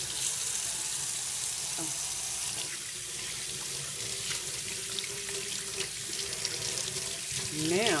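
Kitchen tap running into a stainless steel sink while soapy hands are rubbed and rinsed under the stream, water splashing off them.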